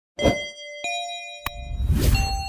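Two bell-like dings, about a quarter second and about a second in, each ringing on with bright overtones. They are followed by a sharp click and then a low rumble that builds near the end.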